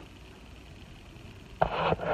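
Quiet room tone, then about one and a half seconds in a sudden bump and rustling as the handheld camera is picked up and swung round.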